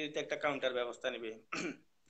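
A man speaking, then a short vocal sound falling in pitch about a second and a half in.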